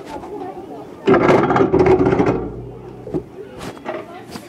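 Muffled voices close to a phone's microphone, with cloth rubbing over it as the phone is handled; the loudest stretch comes about a second in and lasts just over a second, followed by a few sharp clicks.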